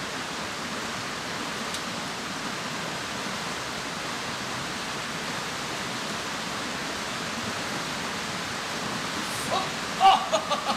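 Steady rushing of a mountain stream running over rocks.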